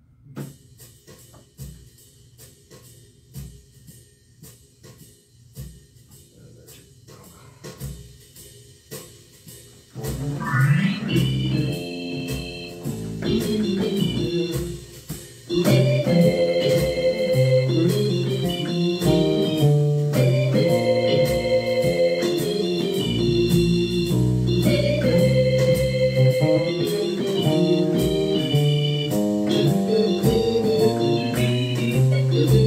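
Electronic keyboard set to an organ voice. Faint clicks come first; about ten seconds in, a quick upward glissando opens into organ chords over a low bass line. The playing breaks off briefly near fifteen seconds, then carries on steadily.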